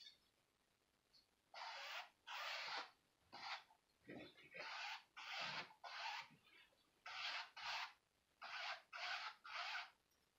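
A paintbrush dragged across an acrylic-painted canvas in quick horizontal strokes, making a scratchy brushing sound about a dozen times, roughly one stroke every half second, starting a second or so in and pausing briefly midway.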